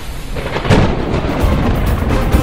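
Thunderstorm sound effect: steady rain with a sharp thunderclap a little under a second in, followed by a low rolling rumble.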